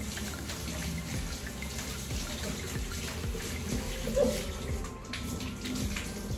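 Water running in a steady stream, like a tap left on, with soft background music and one short louder sound a little after four seconds in.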